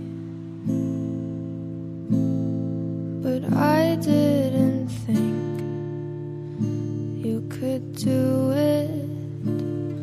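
A slow, sad song: acoustic guitar chords strummed about every second and a half, with a woman singing two short phrases between them.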